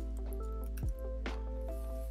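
Background music: held keyboard-like notes over a few deep drum hits.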